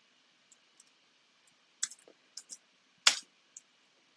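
Computer keyboard keystrokes: scattered, irregular key clicks, with a louder click about three seconds in.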